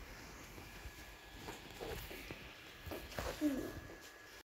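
Faint rustling of green crepe-paper leaves and paper-wrapped stems being handled, with a brief soft murmur of a voice near the end.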